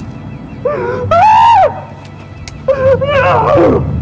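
A man wailing in grief, two long anguished cries rising and breaking in pitch, over a low music bed.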